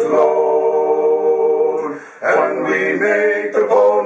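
Men's voices singing a cappella in four-part harmony: a chord held for about two seconds, a short breath, then the next sung line starts.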